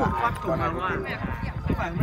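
People talking in the background, over a steady low rumble.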